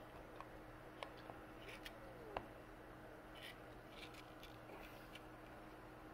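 Near silence: a faint steady low hum with a few faint ticks.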